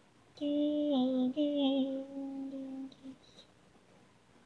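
Unaccompanied voice singing wordless notes in an a cappella arrangement. A note steps down in pitch about a second in, and after a short break a long held note ends about three seconds in; it is quiet before and after.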